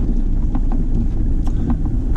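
Steady low rumble of vehicle and wind noise inside the cabin of a first-generation Toyota Sequoia, with a few faint clicks.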